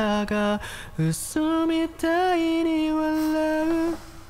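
A man singing a slow melody into a microphone: a few short notes, then one long held note that stops just before the end, with brief hiss-like sounds between phrases.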